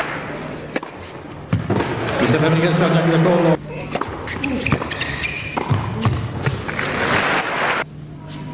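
Tennis ball struck by rackets during rallies on an indoor hard court: a scattered series of sharp pops.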